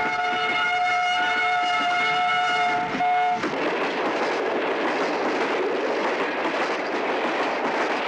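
Train horn sounding one long blast that cuts off about three and a half seconds in, followed by the steady rushing rumble of a train running by.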